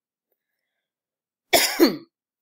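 A woman clears her throat with one short cough, about one and a half seconds in.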